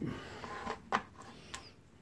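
A few small, sharp clicks and taps of tiny screws and tools being handled on a desk, about three spread over two seconds.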